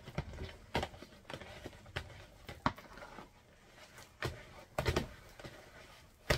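Wooden spoon beating soft fufu dough in a plastic bowl: irregular dull knocks and thuds as the spoon strikes the bowl and slaps the dough, with short pauses between strokes.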